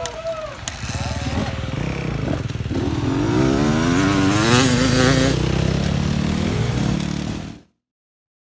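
Dirt bike engines running and revving, the pitch rising and falling repeatedly as the throttle is worked. It grows louder about three seconds in and cuts off abruptly near the end.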